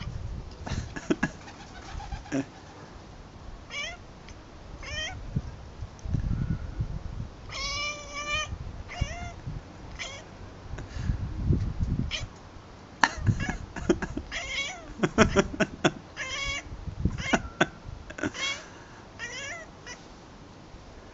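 Domestic cat chattering and chirping in repeated short bursts of bleating, wavering calls, the excited chittering a cat makes while watching birds it cannot reach.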